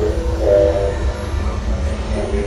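Experimental electronic music: a steady low rumbling drone with short, wavering, voice-like pitched tones over it, loudest about half a second in.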